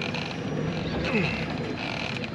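A man's low, strained grunts and groans as he cranks a conventional reel against a heavy fish, with the reel's mechanical noise coming and going in short spells.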